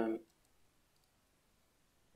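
The end of a spoken word, then near silence with a few faint computer keyboard and mouse clicks.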